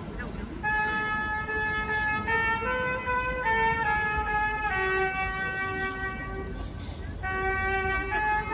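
Trumpets playing a slow tune in long held notes, with a short break just after the start and another about seven seconds in.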